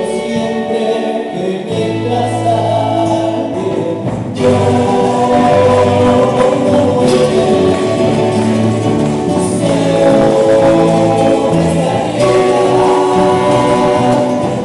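Andean folk ensemble playing live: zampoña panpipes over strummed acoustic guitar, charango and electric bass. The sound grows louder and fuller about four seconds in.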